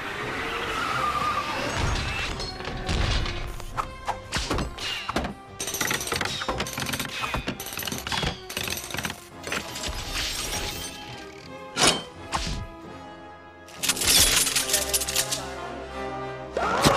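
Film soundtrack: dramatic music under a rapid series of sharp bangs and clatters as wooden planks and chains are slammed across a door. A loud rush of noise comes near the end.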